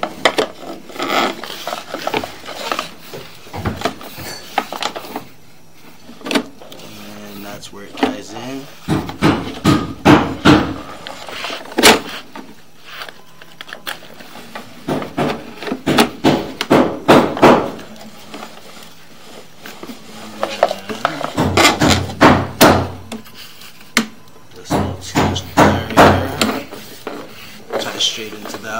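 Sewer inspection camera's push cable being fed in and pulled back through the drain pipe, clattering and knocking in repeated bursts of rapid clicks a few seconds apart.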